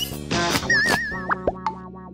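Cartoon-style comedy sound effects over a music sting: a rising glide at the start, a warbling wobble about half a second in, and a short slide near the middle, over steady held notes.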